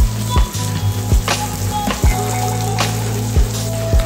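Sliced onions sizzling in hot oil in an iron kadai, under louder background music with a sustained bass line and deep beats every second or so.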